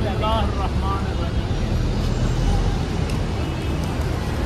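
Wind buffeting the microphone outdoors, a steady low rumble, with a short laugh near the start.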